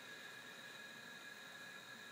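Near silence: a faint steady hiss with a few faint, high, steady tones underneath, and no distinct event.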